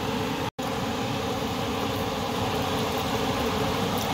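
Steady machine hum, broken by a moment of complete silence about half a second in.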